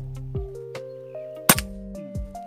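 A single sharp crack of a PCP air rifle shot about one and a half seconds in, over background music.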